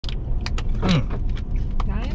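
Steady low rumble of a car cabin, with a handful of short, sharp clicks and crackles scattered through it.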